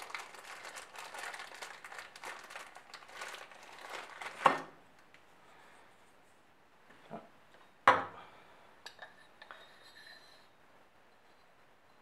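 Plastic parts bags crinkling as new fork bushes are unwrapped. Then two sharp metal clinks about three seconds apart, followed by a few lighter taps.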